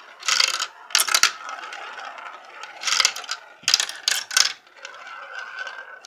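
Glass marbles rolling and clattering through a plastic marble run, with clusters of sharp rattling clicks about half a second in, about a second in, near three seconds and again between three and a half and four and a half seconds. A steady whir near the end as a marble circles a funnel.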